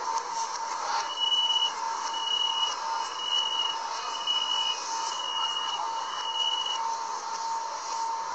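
Chinese metro train door-closing warning beeper sounding six times, about once a second, each beep about half a second long, played backwards. A steady hum runs underneath.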